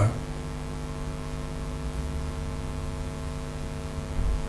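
Steady electrical mains hum on the recording: an unchanging low buzz with a row of evenly spaced overtones.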